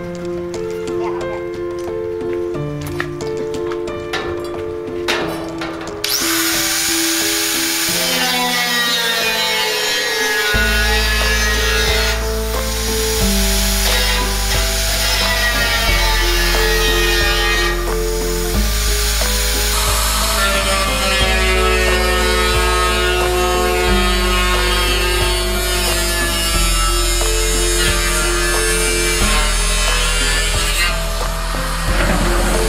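Angle grinder cutting into the steel lid of an oil drum, starting about six seconds in and running on steadily, under background music.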